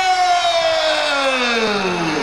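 A man's long, drawn-out vocal cry, held on one breath and sliding slowly down in pitch over about two and a half seconds: the rodeo announcer's exclamation as the bull throws its rider.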